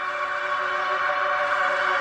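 Song intro: a held synthesizer chord of several steady tones, swelling gradually louder.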